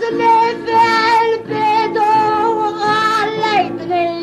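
Maltese għana folk singing: a high, wavering voice holds long sung phrases over instrumental accompaniment.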